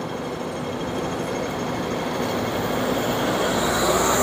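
City street traffic noise: a steady rumble and hiss of passing vehicles that swells slowly.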